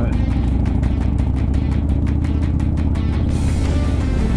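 Motorcycle engine and wind noise at a steady cruising speed, with music playing over it.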